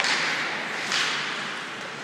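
Ice hockey play on the rink: two sharp scraping hits on the ice about a second apart, each trailing off in a brief hiss.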